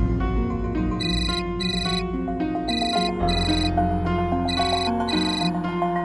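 Phone ringtone: pairs of high electronic beeps starting about a second in and repeating about every second and a half, over a background music score with sustained low notes.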